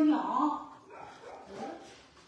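A dog yipping faintly a few times.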